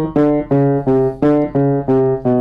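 Feurich 122 upright piano played as a run of single low tenor notes, about three a second, moving between a few pitches across the break point where the bass and tenor strings cross over. The tone is even from note to note across the break.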